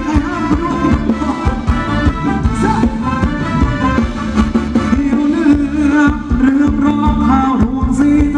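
Live band playing Thai ramwong dance music with a steady beat.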